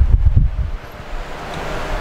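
Low rumbling noise on the microphone, like wind or handling noise, that drops away about two-thirds of a second in to a faint hiss.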